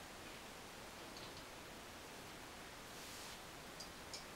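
Quiet room tone with a few faint clicks about a second in, a soft rustle around three seconds in and small clicks near the end, from a flying squirrel being handled out of a small box.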